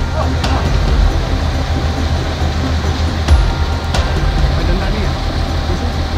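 Wheat threshing machine running steadily nearby, a continuous low drone with a rumbling noise over it.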